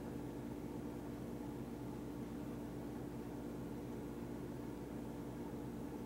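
A steady low hum with a constant hiss under it, unchanging throughout: background noise with no distinct event.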